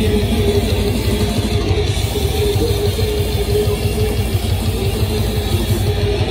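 Death metal band playing live: heavily distorted electric guitars and bass over fast, dense drumming, in a loud, unbroken wall of sound.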